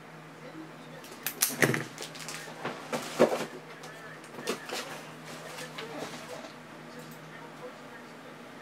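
Several sharp clicks and knocks of things handled on a tabletop, among them a Sharpie marker being set down, with the loudest strikes about one and a half and three seconds in. A faint steady hum runs underneath.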